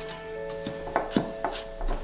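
A spatula scraping and knocking against a glass mixing bowl as butter and sugars are stirred together, a handful of short strokes about a second in, over soft background music with held notes.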